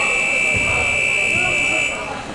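Wrestling scoreboard buzzer sounding one long, steady tone as the clock reaches zero, marking the end of the period. It cuts off just before the end, over faint voices in the gym.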